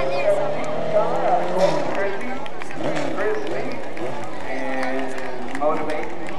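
A dwarf race car's engine rising steadily in pitch as it accelerates, breaking off about two seconds in, with indistinct voices of people talking over it.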